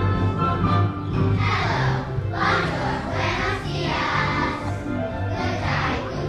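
Elementary school children's choir singing over an instrumental accompaniment. The voices come in about a second in, after the instrumental introduction, and carry on in phrases.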